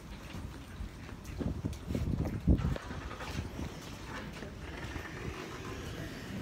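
Wind rumbling on a phone's microphone, with handling bumps and footsteps as it is carried while walking. A cluster of low thumps comes near the middle, the loudest about two and a half seconds in.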